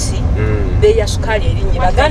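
Steady low rumble of a minibus taxi's engine and road noise, heard inside the cabin under a passenger talking.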